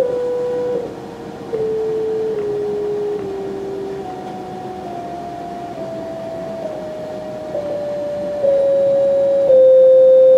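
Analog modular synthesizer playing a descending Shepard scale: two sine-wave oscillators an octave apart step down a chromatic scale, about one note a second, a dozen notes in all. Their VCAs cross-fade the octaves, so an upper tone fades in partway through and the pitch seems to keep falling without end.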